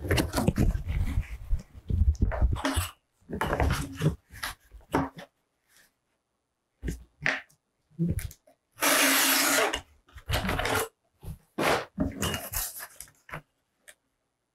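Cardboard being handled and cut on a cutting mat: a sheet sliding and flexing, then a craft knife drawn through the cardboard along a metal ruler in a series of scraping strokes, the loudest lasting about a second a little past the middle.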